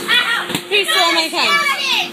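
Children's high-pitched voices calling out in several short, excited bursts, over a faint steady hum.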